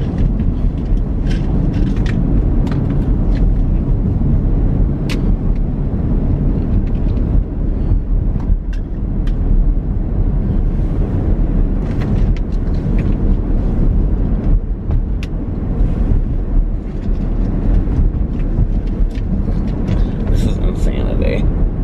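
Steady low road and engine rumble inside a moving car's cabin, with scattered light clicks and rustles.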